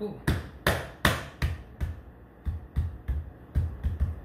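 Knocking by hand, drummed in a beat-like rhythm of about two to three knocks a second, to shake air bubbles out of a freshly poured silicone mold.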